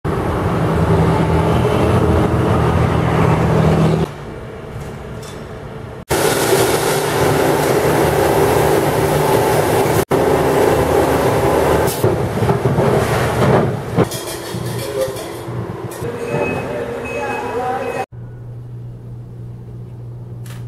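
Loud, steady running noise of milk-packaging machinery and conveyors, with people's voices mixed in. The noise changes abruptly several times as the shots change, and drops to a quieter hum near the end.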